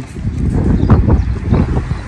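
Wind buffeting the phone's microphone, an uneven low rumble.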